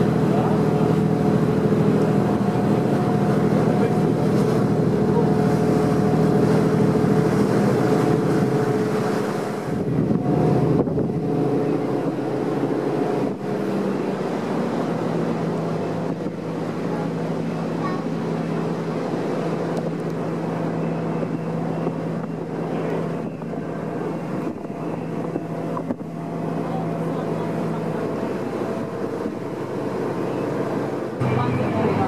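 A harbour ferry's engines running with a steady drone, over wind and water noise on the open deck; the engine tone changes about ten seconds in and settles again a few seconds later.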